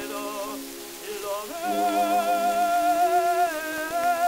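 Early 78 rpm shellac record of a tenor with orchestral accompaniment, from around 1910. A quieter orchestral passage gives way about one and a half seconds in to a louder held note. Steady surface hiss from the disc sits under the music.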